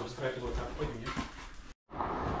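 Quiet, indistinct talk, with a few light knocks, echoing in a small bare room. It cuts out abruptly for a moment near the end.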